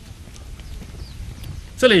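Footsteps on a paved road: shoes striking the ground in an uneven series of faint steps that grow louder. A man starts to speak near the end.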